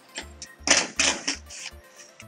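Cordless drill-driver with a T25 Torx bit backing out a taillight screw, running in a few short bursts from about half a second in. Background music with a steady beat plays underneath.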